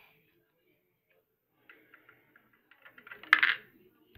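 About a second and a half of near silence, then faint handling noises on a Lego model and, about three and a half seconds in, a sharp click followed by a brief rattle.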